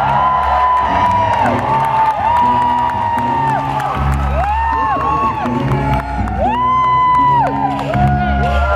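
Loud live concert music over a PA, with held melodic notes over a pulsing beat. The bass grows heavier about halfway through.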